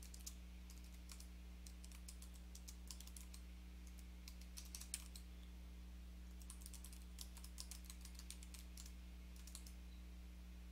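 Computer keyboard typing in quick runs of keystrokes separated by short pauses, faint, over a steady low electrical hum.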